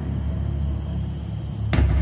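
A low, steady rumbling drone, the kind of background bed that underlies a documentary soundtrack. A voice comes in near the end.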